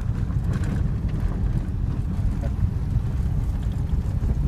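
Car driving on a gravel road, heard from inside the cabin: a steady low rumble of engine and tyres on gravel.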